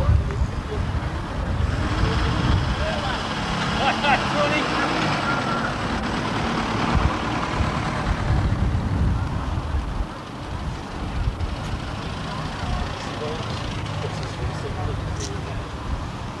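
Engines of vintage cars running at low speed as they drive slowly past on a grass track, with voices in the background.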